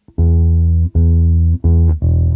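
Electric bass guitar plucked, three notes on E at the same pitch: the first two held about half a second each, the third shorter.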